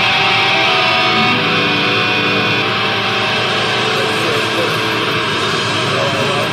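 Loud, dense screamo/grind band music from a lo-fi demo tape: distorted guitars holding sustained chords over a thick, steady wall of noise.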